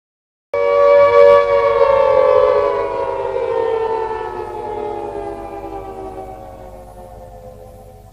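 Intro sting for a channel logo: a loud, rich sustained synthesized tone that starts suddenly about half a second in, then slowly glides down in pitch and fades away.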